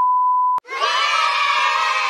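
Steady 1 kHz test tone, the kind played with colour bars, cut off by a click about half a second in. It is followed by a crowd of children shouting and cheering 'yay', an edited-in sound effect.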